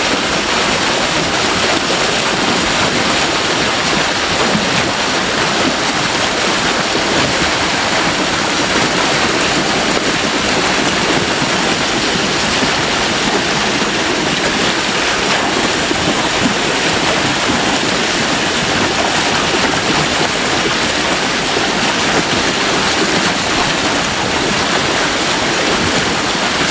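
Steady, loud rush of water pouring over a weir edge into a churning, foaming pool, the channel swollen with snowmelt floodwater.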